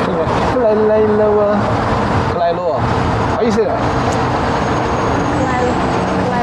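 Road traffic at a busy intersection: cars and trucks passing with a steady road noise, and people's voices over it.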